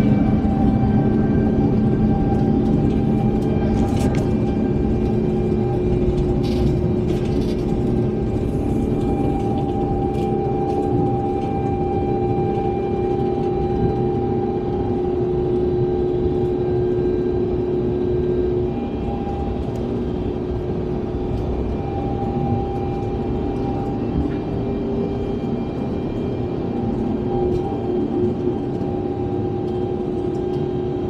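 Airbus A350-900's Rolls-Royce Trent XWB engines at takeoff thrust during the takeoff roll, heard from inside the cabin: a loud, steady engine drone with several held tones over a low rumble. It drops a little in level about two-thirds of the way through.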